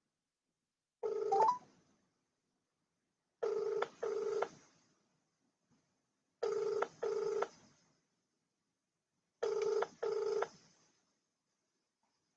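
Telephone ringing tone: a short rising chime about a second in, then three double rings about three seconds apart.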